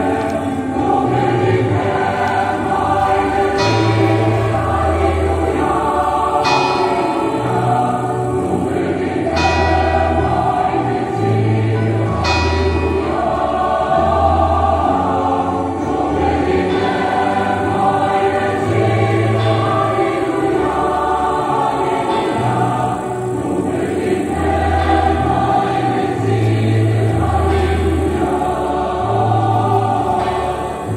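Choral music with instrumental accompaniment: sustained choir voices over a bass line that steps evenly from note to note, with a bright struck note about every three seconds in the first half.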